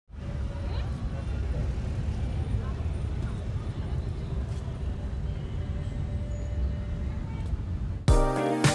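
Steady low rumble of city ambience, like distant traffic, fading in abruptly at the start and holding even throughout.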